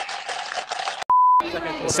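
A single short electronic bleep: one steady high tone lasting about a third of a second, about a second in, cutting in sharply over a gap of silence. It is the kind of edited-in bleep used to censor a word.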